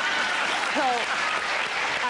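Studio audience applauding and laughing at a punchline, with a voice breaking through about a second in.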